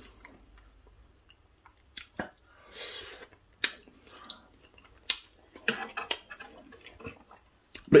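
A man chewing a hot mouthful of braised beef and mash: scattered wet mouth clicks and smacks, with a short breathy rush about three seconds in.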